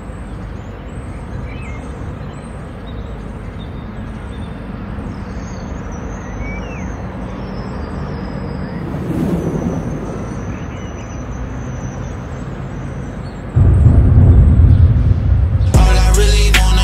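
Outdoor street ambience with a car engine running steadily and a few faint high chirps. About three-quarters of the way through, a much louder low rumble comes in.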